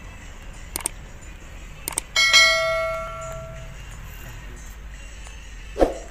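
Subscribe-button animation sound effect: two mouse clicks, then a bright notification-bell ding that rings out for about a second and a half, over the steady low hum of a moving car. A short dull thud comes near the end.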